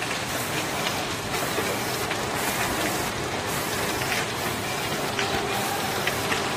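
WT-620GS wrap-around labeling machine running: a steady mechanical running noise from its conveyor and label feed, with a few faint clicks.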